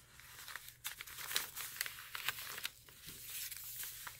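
Soft, irregular rustling and crinkling of paper, with many small crackles, as a hand lifts and moves the tags and cards on the coffee-stained paper pages of a handmade journal.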